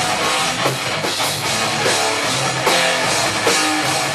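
A hardcore band playing live, with loud, dense distorted guitars and a pounding drum kit.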